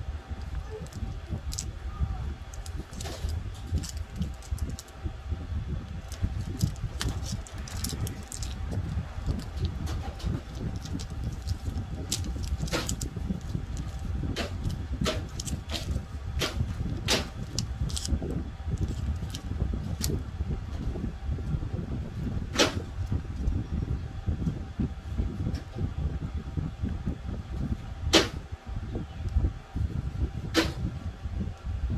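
Scattered sharp clicks and taps as hands peel stick-on plastic letters from a clear plastic backing sheet and press them onto a car hood. A low steady rumble runs underneath.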